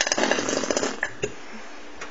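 Plastic squeeze bottle of coarse ground mustard spluttering as mustard and trapped air are forced out of the nozzle, a rapid rattly burst lasting about a second, followed by a couple of short clicks.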